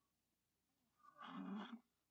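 Near silence, with one brief, faint, low vocal noise from the woman reading aloud about a second in, lasting under a second.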